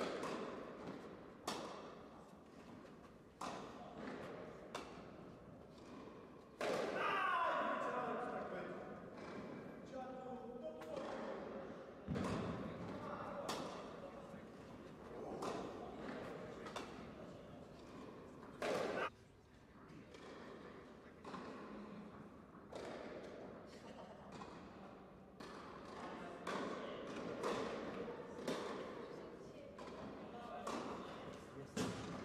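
Tennis ball being struck with rackets and bouncing on an indoor court: a string of sharp, irregularly spaced hits through the rally, echoing in the hall.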